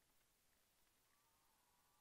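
Near silence: the sound track is all but muted.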